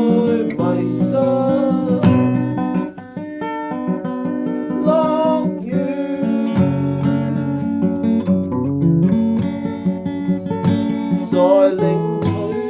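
Acoustic guitar music: sustained strummed and plucked chords with a melody line over them.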